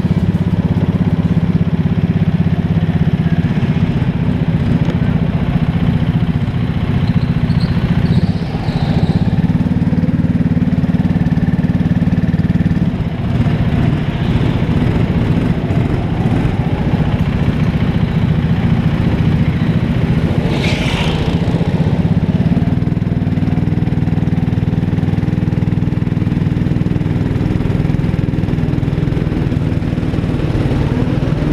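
Indoor rental go-kart's small engine running hard under racing, heard close from the kart itself, with a steady low drone that dips briefly a couple of times as the driver comes off the throttle for corners.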